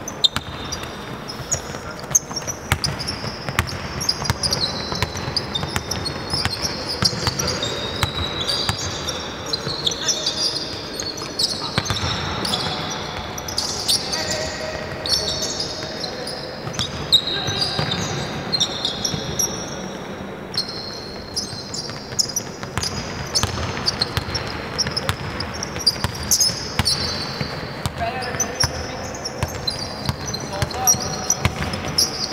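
Basketball play on a hardwood court in a large sports hall: a ball dribbling and bouncing, many short high sneaker squeaks, and players calling out.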